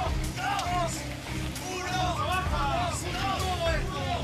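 Several people shouting short calls of encouragement over one another, each call rising and falling, with a low steady hum underneath.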